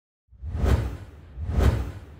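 Logo-intro sound effect: two whooshes about a second apart, each with a deep low rumble under it, the second trailing off into a fading tail.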